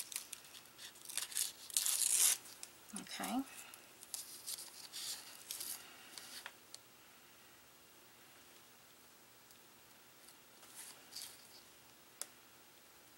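X-Acto craft knife slicing through tissue paper, its blade run against a wire edge to trim the excess away, in a run of short scratchy strokes for the first six seconds or so and a few more near the end.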